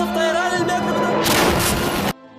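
Background music with a loud explosion or shell blast from combat footage coming in over it about halfway through, a dense noisy rumble that cuts off abruptly at an edit near the end.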